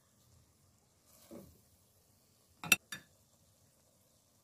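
Two sharp clicks about a quarter of a second apart, a little past halfway through, over a faint hiss and a soft rustle just before them.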